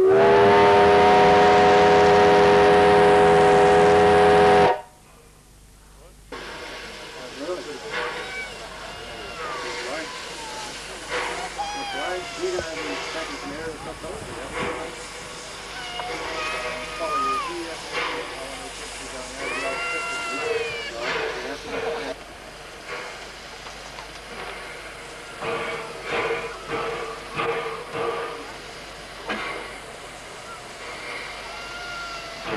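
Steam locomotive whistle, pulled by its cord in the cab: one long, loud, steady blast of several tones with a steam hiss, about four and a half seconds, that cuts off abruptly. People's voices follow at a lower level.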